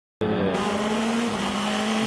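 Le Mans prototype race car engine running at high revs at speed, a steady note that steps down slightly about two-thirds of the way through, with road and wind noise.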